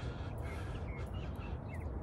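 Birds calling: a scattering of short, high chirps that glide slightly in pitch, over a steady low rumble.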